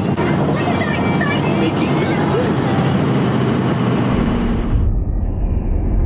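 Animated film's dialogue and music playing from a vehicle's overhead DVD screen, mixed with the vehicle's cabin rumble. About four seconds in, the sound turns muffled and dull, dominated by a heavy low rumble.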